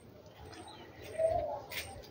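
A short bird call a little over a second in, followed by a brief click, against a quiet outdoor background.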